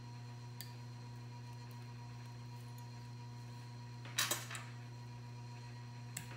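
Steady low electrical hum with faint high tones over it. About four seconds in comes a short cluster of sharp clicks from small fly-tying scissors being handled at the vise.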